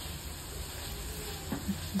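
Aloe vera and amla pieces sizzling faintly in oil in an open frying pan as a spatula stirs them, with a light tap of the spatula about a second and a half in.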